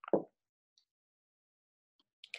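A single short, soft pop right at the start, against near silence.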